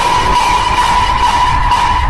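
A loud, steady, high-pitched held tone over a low rumbling noise.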